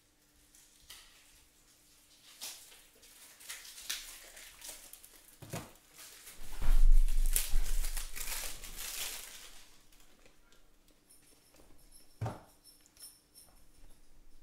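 Crinkling and rustling of trading-card packaging and cards being handled, with scattered small clicks. About halfway through a heavy low bump is the loudest sound, and a single sharp knock comes near the end.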